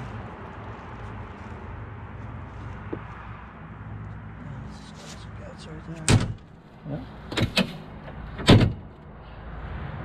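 A few sharp hard knocks, one about six seconds in, two close together near seven and a half seconds and the loudest at eight and a half, from the Polaris RZR's door and lower door panel being handled against the door frame, over a steady low rumble.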